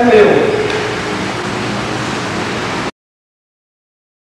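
A man's voice trailing off at the very start, then a steady hiss of background noise from an old video recording. The noise cuts off abruptly into dead silence about three seconds in.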